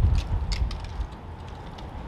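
A low rumble that fades over the first second, with a few short, light clicks.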